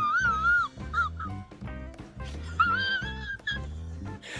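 A high, wavering whimpering whine in two stretches, at the start and again near three seconds in, over background music.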